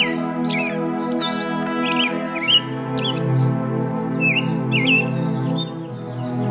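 Calm background music of sustained chords, its bass stepping down to a lower note about two and a half seconds in, with birds chirping over it in short, repeated rising and falling calls.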